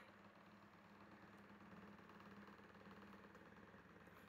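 Near silence: faint room tone with a weak, steady low hum.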